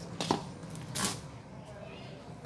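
Handfuls of damp sand being dropped and pressed by hand into a plastic planter: two short scraping, rustling sounds about three-quarters of a second apart, the first the loudest, over a steady low hum.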